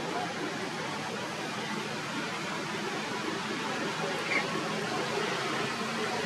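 Steady outdoor background noise, an even hiss, with one brief faint high chirp about four seconds in.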